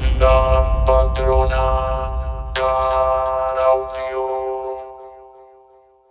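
End of a dance-music track: a held chord over deep bass with a few sharp accented strikes, the bass dropping away about four and a half seconds in and the chord fading out to silence by the end.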